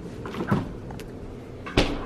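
Refrigerator door being opened and shut: a faint click about a second in and a louder thud near the end.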